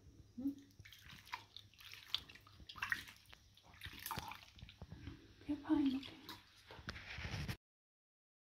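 Water sloshing and splashing in a soapy basin as hands wash a kitten, in short irregular bursts, with a brief word or two of voice. The sound cuts off abruptly near the end.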